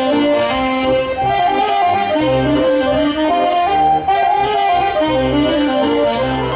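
Live Breton folk dance music from a band, a repeating melody over a pulsing bass line, played for a chain dance.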